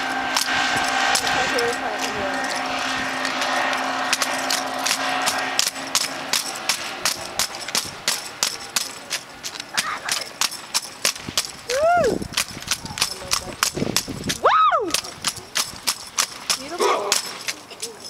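An armed drill team's rifle drill: a fast run of sharp slaps and knocks from hands striking rifles and boots stomping on pavement, growing thicker and crisper after about six seconds. A few short rising-and-falling vocal calls cut in near the end.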